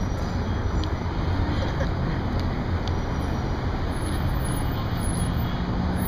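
Steady road traffic noise from passing cars, a low, even rumble with no single vehicle standing out.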